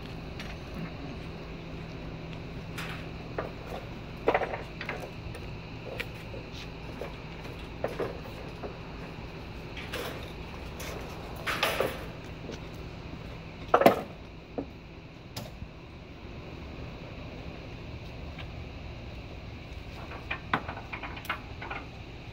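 Scattered metal clanks and wooden knocks from handling a motorcycle strapped down on a wooden trailer deck, with the loudest knocks about four, twelve and fourteen seconds in, over a steady low hum.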